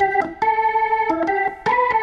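Electronic organ playing a melody of held notes that step up and down in pitch, with two brief breaks between phrases.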